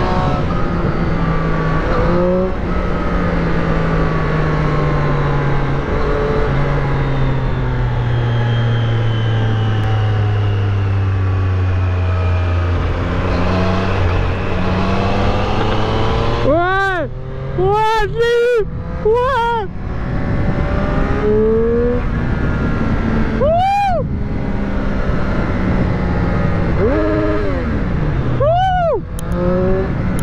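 Motorcycle engine under way. Its revs fall slowly over about ten seconds, then it gives a cluster of quick rev rises and drops past the middle, one more a few seconds later and one near the end, over steady wind noise.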